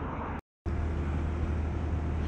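Honda Monkey 125's small air-cooled single-cylinder four-stroke engine running steadily under way, heard from the rider's camera with road noise. The sound cuts out completely for a moment about half a second in, then the same steady engine hum returns.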